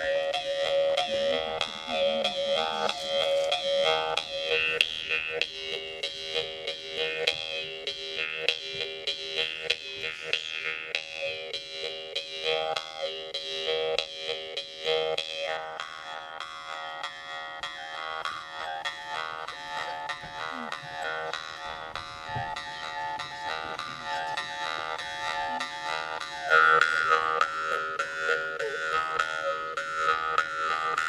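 Yakut khomus (jaw harp) played with rapid plucking: a steady drone with an overtone melody gliding up and down above it. It grows louder and brighter near the end.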